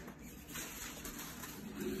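Faint rustling of hands handling something at a kitchen counter, with a short laugh starting near the end.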